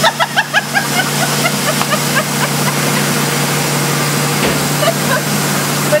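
Steady drone of plastic molding machinery in the plant, a constant low hum under an even hiss. Laughter over it in the first second.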